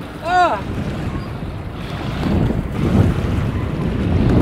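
Wind buffeting the microphone over small waves lapping at a river bank, growing louder toward the end, with hands splashing as they are rinsed in the river water.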